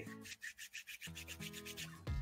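Faint, quick scratching, about ten strokes a second, from a hand rubbing against a beard close to the microphone. Faint held tones sit underneath in the second half.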